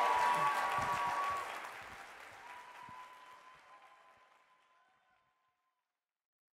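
Theatre audience applauding at the close of a talk, loud at first and fading away over about five seconds.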